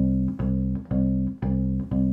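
Fretted bass ukulele plucking the same low note over and over in even, straight quavers, about two notes a second.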